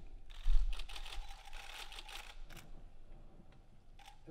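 Camera shutters clicking in quick, irregular flurries, densest in the first couple of seconds and thinning out after, with a dull low thump about half a second in.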